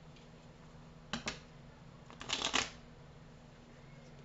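Tarot cards being shuffled by hand: two short snaps a little after a second in, then a brief crackling riffle of cards about two seconds in.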